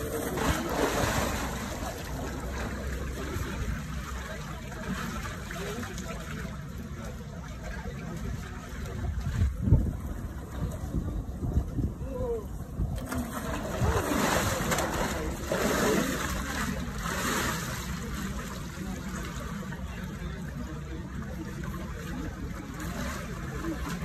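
Water splashing and sloshing in a cold plunge pool as bathers dunk and wade through it, against the chatter of voices around the pool and a low rumble, with one sharper thump about ten seconds in.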